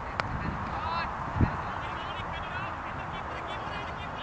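A cricket bat strikes the ball with a single sharp crack just after the start. Short, distant shouted calls follow as the batsmen set off for a run, with one dull thump near the middle.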